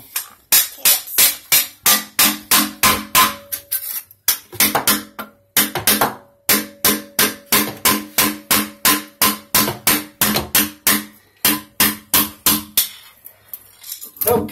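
Hammer driving a metal blade under a toilet's base to break the caulk seal to the floor: quick, even blows, about three a second, each with a short metallic ring. There are two brief pauses near the middle, and the blows stop about a second before the end.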